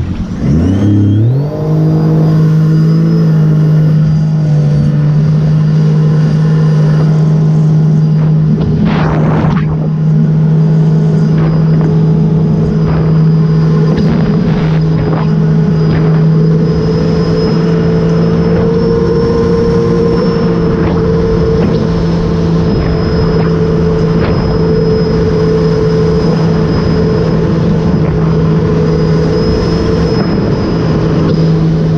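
2018 Sea-Doo RXP-X 300 jet ski, its supercharged Rotax 1630 ACE three-cylinder engine breathing through a Riva Racing free-flow exhaust. The engine revs up over the first two seconds, then holds a steady cruising note over the rush of water. A thin, high, steady whine sits above the engine note.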